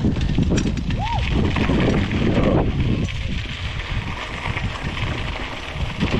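Mountain bike rolling down a dirt singletrack: tyres crunching over the dirt and the bike rattling over bumps, with wind buffeting the microphone. A short squeak rises and falls about a second in.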